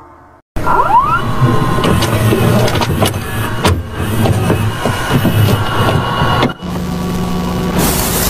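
VHS tape-playback sound effect: a loud mechanical whirr with glitchy clicks and a rising whine about a second in. From about seven seconds it gives way to steady tape static, a hiss over a low hum.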